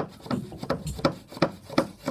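Small metal plane scraped rapidly back and forth over a cured hot melt filler plug in a pine board, shaving off the excess filler: about three short scraping strokes a second.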